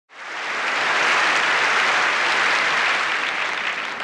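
Audience applause: a dense, steady clapping that swells up quickly at the start and eases off slightly toward the end.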